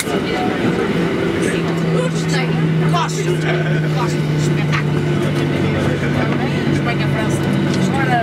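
Cabin noise of a Boeing 737-800 rolling out on the runway just after landing: a steady engine hum that sinks slowly in pitch as the engines wind down, with muffled voices in the cabin.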